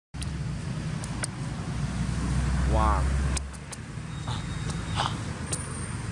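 A motorbike engine passing on a nearby road: a low rumble that swells and peaks around the middle, with its pitch rising briefly as it accelerates, then fades.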